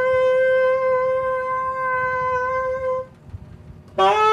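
Saxophone holding one long, steady note that stops about three seconds in. After a brief pause the next note starts at the very end, sliding up into pitch.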